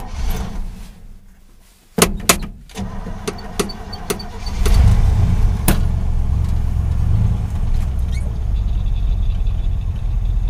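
1968 Chevy dump truck engine cold-started on the choke: the starter cranks it for a couple of seconds, it catches about four and a half seconds in and settles into a steady idle.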